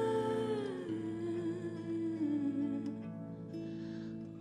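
A woman singing a slow melody in long held notes, the pitch stepping down about a second in, accompanied by a string instrument that holds steady notes beneath the voice.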